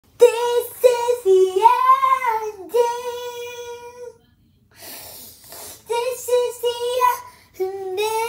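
A child singing unaccompanied in a high voice, holding notes that swoop up and then fall. A little past the middle the singing breaks off for a breathy, unpitched stretch, then the held notes return.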